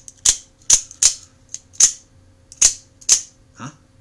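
Titan dual-action out-the-front knife's spring-driven blade firing out and snapping back, six sharp snaps at uneven intervals.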